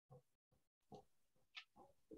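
Near silence with a few faint, short sounds, each cut off sharply.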